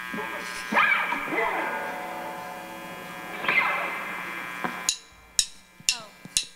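A held keyboard chord with two sweeping swells, fading out after about five seconds. Near the end, three sharp clicks about half a second apart: a drumstick count-in before the band starts the song.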